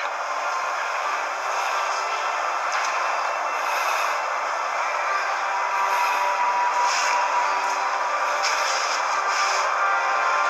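Steady hiss-like noise with a few faint held tones underneath, level throughout and with no low end.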